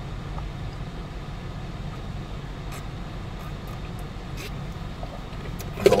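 Steady low hum of a car idling, heard inside the cabin, with a few faint clicks.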